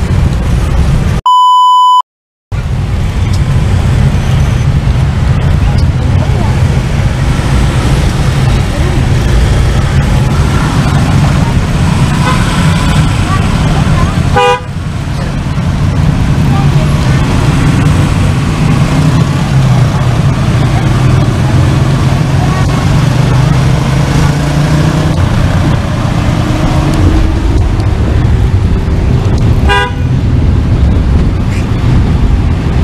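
Loud, steady engine and road rumble inside a vehicle cabin moving through heavy motorcycle traffic, with a short horn toot about halfway through. About a second in, a loud, steady electronic beep sounds for under a second, followed by a brief moment of silence.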